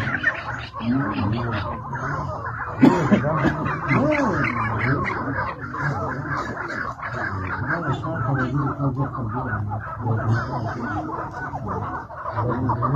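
Chukar partridges calling in a continuous run of clucking calls as two birds square up to each other.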